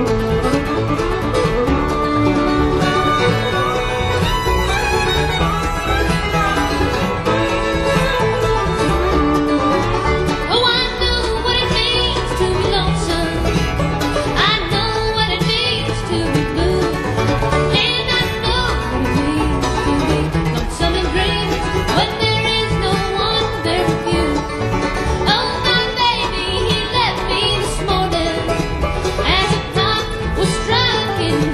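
Live bluegrass band playing a song, with banjo, fiddle and guitar.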